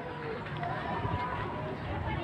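A man's voice speaking quietly into a microphone, carried over the gathering's sound system, in a lull between louder phrases.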